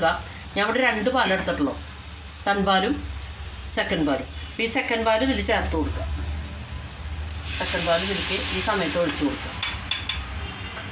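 Masala-coated fish pieces sizzling as they fry in a steel pan and are stirred with a spatula. The sizzle grows louder for a couple of seconds near the end.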